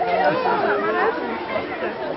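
Overlapping chatter of many people talking at once, a steady babble of voices.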